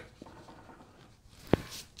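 A pen-style rubber eraser rubbing lightly over pencil lines on drawing paper, a faint scrubbing. There is one sharp click about one and a half seconds in, followed by a brief burst of scratchier rubbing.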